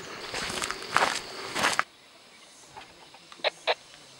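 Footsteps crunching on a dirt track with carried gear rattling, with two heavier steps standing out. This stops abruptly at about two seconds. Near the end come two short clucks from a chicken, about a third of a second apart.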